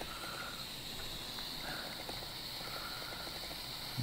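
Faint steady hiss of an electric hot knife melting through the end of a synthetic rope to seal it, with light handling of the rope.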